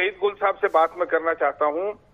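Speech only: a man talking in Urdu.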